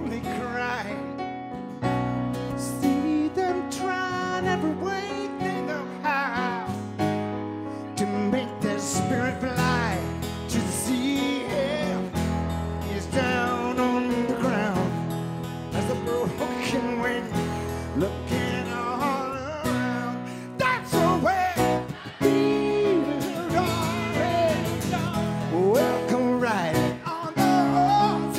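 Live band playing a pop-rock song with acoustic guitar and keyboard, and a male lead singer.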